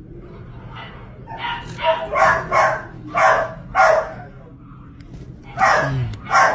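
A dog barking, about six sharp barks in quick succession, then another near the end.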